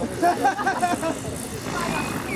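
Nearby people talking with the words indistinct, over a steady low background noise.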